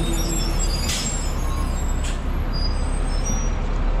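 Steady traffic rumble of a busy city avenue, with two short hisses about one and two seconds in.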